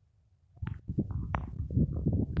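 Rumbling, crackling noise on the microphone begins about half a second in, with a few sharp clicks on top, the kind of buffeting and handling noise a handheld phone microphone picks up outdoors.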